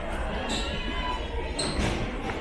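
Airport check-in hall ambience: a steady hubbub of indistinct voices, with two sharp knocks on the hard floor, about half a second in and near the end.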